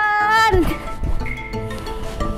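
A high-pitched voice draws out its last called word, ending about two-thirds of a second in, over background music with light pitched notes that carries on alone after it.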